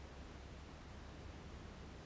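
Very quiet room tone: a faint steady hiss with a low hum underneath, and no distinct sound standing out.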